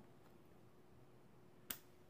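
Near silence broken by a single sharp click near the end: a baitcasting reel's side plate clicking free as it is twisted off.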